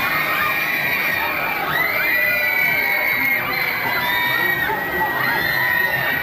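Many riders on a looping fairground thrill ride scream together as their gondolas swing upside down. The long, high screams overlap and rise and fall over the steady fairground din.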